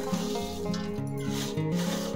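Instrumental background music over a dry rubbing, scraping sound of a roasted flour, gum and dry-fruit mixture being mixed in a bowl.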